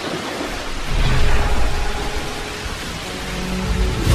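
Thunderstorm sound effect: the hiss of rain with a deep thunder rumble that grows loud about a second in, and faint music tones underneath.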